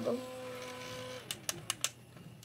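Small battery-powered handheld fan's motor whining steadily, then winding down with a falling pitch a little past the middle. Then come four sharp clicks from handling its plastic casing.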